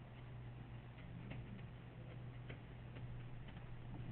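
Faint, irregular light clicks of a stylus tapping on a writing surface as an equation is handwritten, over a low steady hum.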